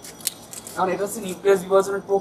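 A young man's voice speaking, starting a little under a second in, preceded by a couple of brief, sharp high-pitched clicks.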